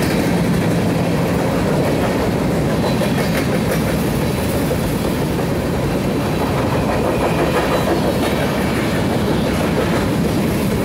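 Loaded-looking BNSF covered hopper cars of a freight train rolling past at close range, a loud, steady noise of steel wheels running on the rails.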